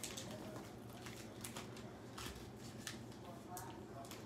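Faint, scattered crinkles and taps of foil trading-card booster packs being shuffled and sorted by hand.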